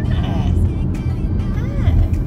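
Steady low road and engine rumble inside a moving car's cabin, with short voice sounds near the start and again just before the end.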